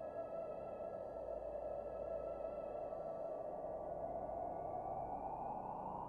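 Quiet ambient synthesizer music: a sustained, held chord with a soft hazy wash beneath it. Over the second half, one tone slowly rises in pitch like a sonar sweep.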